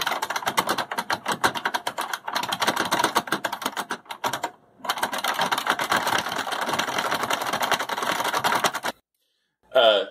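Fast typing on an IBM Model M-style buckling-spring keyboard, a dense run of loud key clacks. It breaks briefly about two seconds in, pauses for half a second just after four seconds, and stops about nine seconds in.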